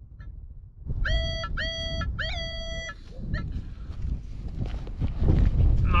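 Minelab CTX 3030 metal detector giving three short, steady beeps about a second in, all at the same pitch, over wind rumbling on the microphone. It is a loud signal from a buried metal target, likely a coin. A cough comes at the very end.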